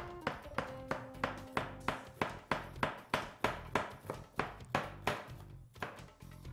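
Chef's knife chopping a green bell pepper on a plastic cutting board: steady, even knocks of the blade hitting the board, about three a second.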